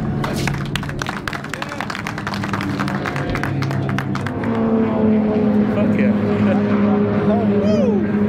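A small crowd claps and applauds for about the first half. Then a steady engine hum rises and holds through the second half.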